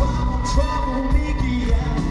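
Live pop music over an arena PA, recorded from among the audience: a heavy, pulsing bass beat with sharp drum hits and held synth tones.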